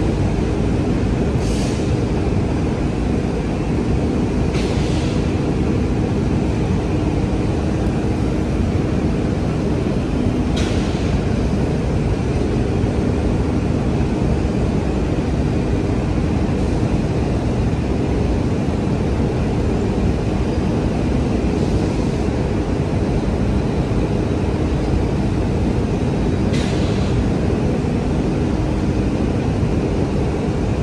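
A steady, loud low rumble with a faint hum in it, unchanging throughout, with a few brief faint clicks scattered through it.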